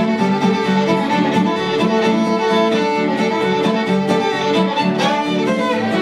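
A fiddle and an acoustic guitar playing an instrumental tune together: a bowed fiddle melody with sustained notes over steadily strummed guitar chords.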